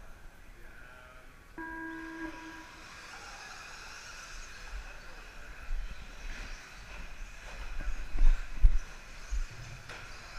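An electronic tone, one steady beep of about a second, like a race timing system's signal. Then the whir of electric RC short-course trucks running on the dirt track builds, with a few low thumps near the end.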